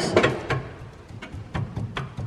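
A few light, scattered clicks and knocks as a replacement rubber engine mount is pushed by hand into its metal bracket under the car.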